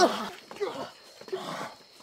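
A person growling and groaning like a zombie, loud at the start and dying away within about half a second, with a few weaker growls after.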